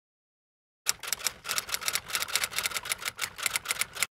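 Rapid clicking like typewriter keys, about nine clicks a second, starting about a second in and stopping abruptly: a typing sound effect for animated on-screen text.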